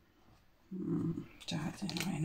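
A woman's low, wordless 'hmm' murmured twice, starting less than a second in, with a light tap of a card laid on the table between them.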